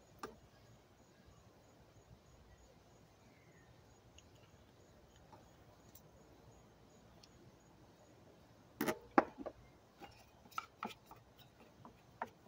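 A metal spoon scraping and clinking against a tin can and a small glass jar while scooping thick alcohol fire gel. A single click comes early, then a short cluster of sharper taps and scrapes about nine seconds in, with a few more just after.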